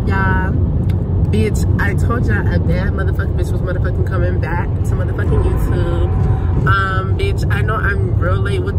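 Steady low rumble of a car driving, heard inside the cabin, with a woman talking over it in short stretches.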